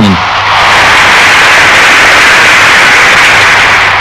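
Stadium crowd cheering, a loud, steady wash of massed voices that swells in during the first half-second.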